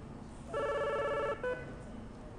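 Electronic desk telephone ringing: one trilling ring of just under a second, followed by a brief single tone.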